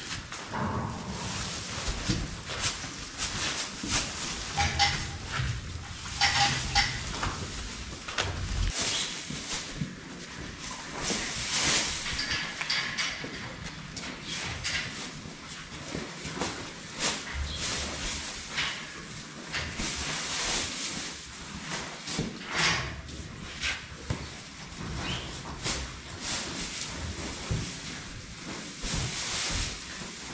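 Dry oat straw rustling and crunching as small square bales are broken open, their twine pulled off and the flakes pulled apart and tossed onto the pen floor, in irregular handfuls.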